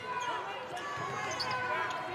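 Live basketball court sound: sneakers squeaking on the hardwood and a basketball being dribbled, with voices in the arena underneath.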